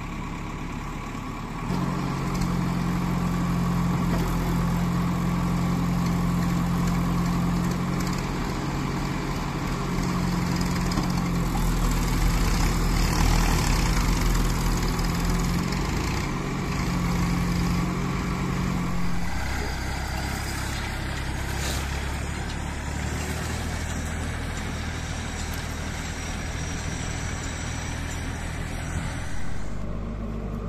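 JCB 3DX backhoe loader's diesel engine running under load as the backhoe arm digs and swings soil, with a steady hum that steps up about two seconds in and settles lower after about nineteen seconds.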